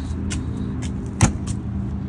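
A motorhome's exterior storage compartment door being shut, with small latch clicks and one sharp slam about a second in. A steady low mechanical hum, like an idling engine, runs underneath.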